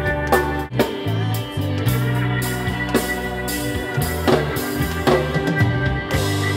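Rock band music: drum kit, bass guitar and electric guitar playing together, with a moving bass line under sustained guitar notes.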